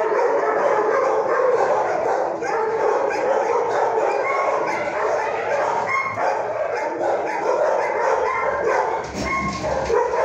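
Dogs barking and yipping in a shelter kennel, overlapping into a steady din without pauses.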